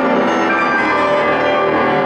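Grand piano played loud in full, dense chords whose many notes ring on together, with a low bass note held from about midway.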